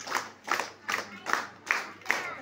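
Hands clapping together in a steady, even beat, about five claps in two seconds.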